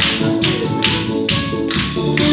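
Tenor saxophone playing a melody over a recorded backing track with a steady drum beat, about two hits a second.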